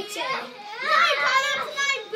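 Children's high-pitched voices as they play.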